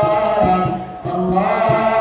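A boys' nasyid group singing a cappella, a lead voice on the microphone over sustained harmony from the others. The voices dip briefly about halfway through, then come back in.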